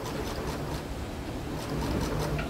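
Steady rushing noise of rain and traffic on a wet street.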